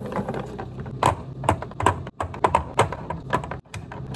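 Eggs being set one by one into a clear plastic egg holder on a stone countertop: an irregular run of sharp clicks and taps as the shells knock against the plastic.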